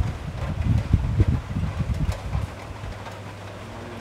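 Wind buffeting a clip-on microphone: irregular low rumbling gusts for about two and a half seconds, then dying down to a quieter rumble.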